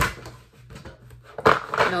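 Tarot cards being shuffled softly by hand in a brief pause between spoken words, with a woman's voice before and after.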